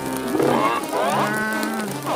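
A cartoon character's wordless vocal: a short rising cry, then one long held note, as he is pushed down under a giant hand.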